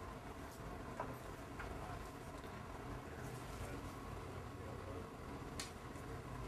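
Quiet room tone with a steady low hum. A few faint clicks come from plastic labware, a centrifuge tube and a syringe, being handled, and the sharpest click is near the end.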